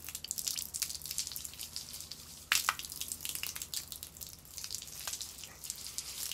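Weak flow of water from a garden hose spattering and dripping onto paving in irregular little splashes, with one sharper, louder splash or knock about two and a half seconds in.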